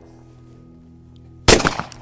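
A single shotgun shot about a second and a half in, a sharp crack that dies away quickly, fired at a clay target after a low steady hum.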